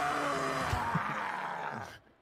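A cartoon creature's deep, rough growl from the episode's soundtrack, trailing off near the end.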